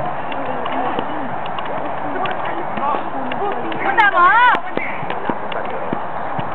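Outdoor football pitch din: players' voices calling at a distance over a steady background noise, with scattered faint knocks. About four seconds in, a loud, high-pitched shout rises and falls for about half a second.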